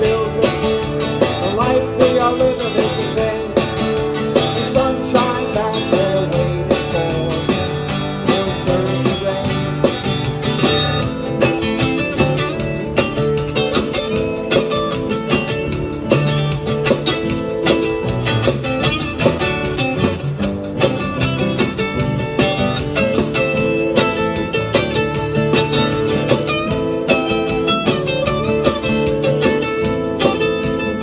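Two acoustic guitars strumming and picking an instrumental passage of a song, with a steady rhythm.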